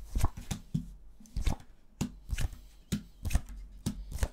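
A deck of Lenormand cards being shuffled by hand and cards laid down on a wooden table: a string of short, irregular card snaps and taps, about two a second.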